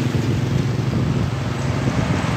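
An engine running steadily, a low hum with a fast, even pulse.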